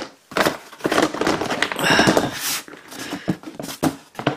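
A small hard-plastic storage box being handled and its lid worked open by hand: an irregular run of plastic scraping, rubbing and clicking.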